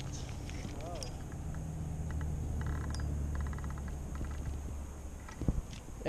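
Spinning fishing reel ticking rapidly for about a second, about halfway through, while the angler works a snagged line, over a steady low rumble.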